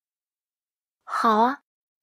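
After about a second of dead silence, a woman's voice speaks one short word lasting about half a second, with a dipping-then-rising pitch.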